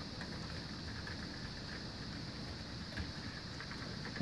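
HO scale model coal hopper train rolling along the track: a steady, quiet running noise with a few faint clicks.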